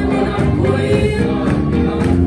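A large congregation singing a hymn together with musical accompaniment.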